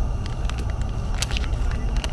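A foil drip-coffee packet crinkling and tearing in the hands: a few sharp crackles about half a second in and again past the middle, over a steady low rumble.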